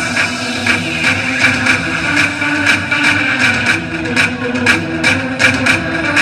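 Loud Zumba dance music with a steady beat, played over loudspeakers for the class.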